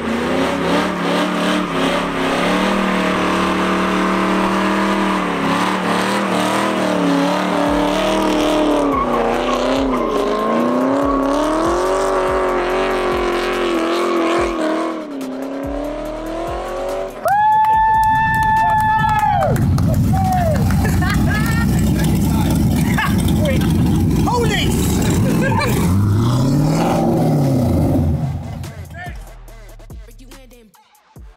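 Pontiac Trans Am V8 revving, its pitch rising and falling, during a burnout with billowing tyre smoke. A loud high tyre squeal lasts about two seconds a little past halfway, followed by more revving, with rap music playing underneath.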